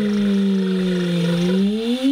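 A held, pitched tone with overtones, part of an outro sound effect: its pitch sinks slowly and then bends upward near the end.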